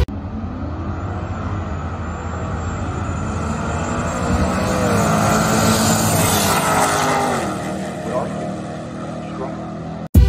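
Two Hemi V8 drag cars, a Dodge Challenger and a Jeep Grand Cherokee, running at full throttle down the quarter-mile. The engine note builds and climbs in pitch, is loudest as they pass about six seconds in, then drops in pitch and fades.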